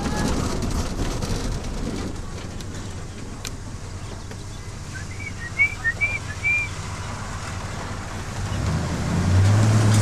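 Engine and road noise of a car heard from inside the cabin while driving. It eases off in the middle, then a steady low engine drone swells up near the end. A few short high chirps come about five to six and a half seconds in.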